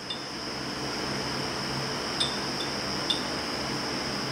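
Steady background noise with a thin high whine, and a few light clicks about two and three seconds in as the aluminum lure mold half is handled.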